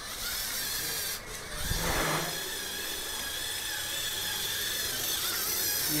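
LEGO Mindstorms robot's small electric gear motors whirring steadily as it drives, with a short louder noise about two seconds in.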